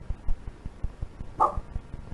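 A dog barks once, about one and a half seconds in, over irregular low thumps.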